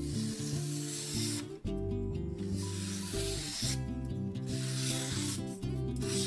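A freshly sharpened left-handed kitchen knife slicing through a sheet of newspaper held in the air, a papery rasping cut repeated in several strokes of about a second each, testing the new edge after the 5000-grit stone. Background music plays throughout.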